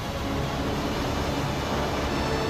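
Steady heavy roar of large waves breaking and rushing water, strongest in the low range, with faint held music notes starting to come in underneath.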